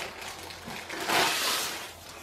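Clear plastic sleeve rustling and crinkling as a rolled diamond-painting canvas is slid out of it, louder from about a second in.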